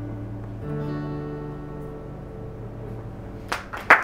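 Steel-string acoustic guitar chord strummed and left to ring out and fade, with a new chord struck about half a second in. Hand claps start near the end.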